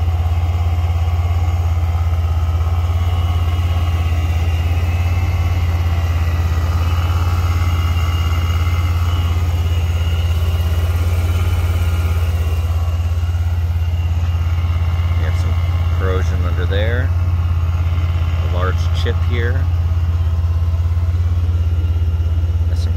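The Vortech-supercharged 3.8 L V6 of a 2008 Jeep Wrangler Unlimited idling, a steady low hum at an even level.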